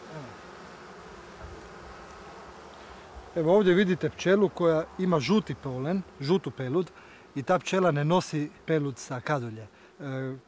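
A steady hum of honeybees around the hives. From about three seconds in, a single honeybee held between fingers buzzes loudly close up in repeated stop-start bursts, its pitch swooping up and down.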